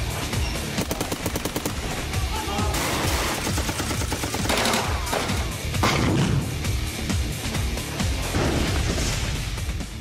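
Rapid bursts of automatic rifle fire, fastest in the first two seconds, with further bursts and bangs later, over tense background music.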